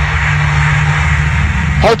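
A drum and bass track in a beatless stretch: a held low bass note under a wash of hiss. An MC's voice starts over it near the end.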